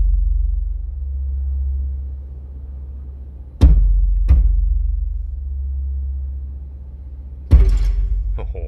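Bass-heavy music played loud through a car's upgraded Ground Zero audio system and subwoofer, heard inside the cabin. A deep bass line runs throughout, with sharp drum hits about three and a half seconds in, again under a second later, and once more near the end. The bass is deep enough to shake the whole car.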